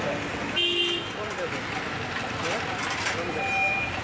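Busy street ambience: background chatter of voices with two short vehicle horn toots, one about half a second in and a second, higher one near the end.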